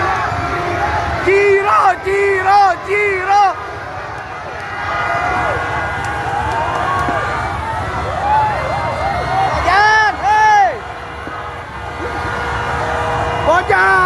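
Crowd of Persib football supporters chanting over a continuous crowd din, with short bursts of loud shouted syllables in unison: four in quick succession about a second in, two more near ten seconds, and another at the end.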